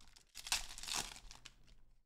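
A 2023-24 Upper Deck Credentials hockey card pack's wrapper being torn open and crinkled by hand: a quiet rustling that starts about half a second in and is loudest around a second in.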